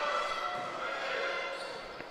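Basketball game sounds from the wooden court, with the ball and players' shoes on the floor, under the steady hum of an indoor hall.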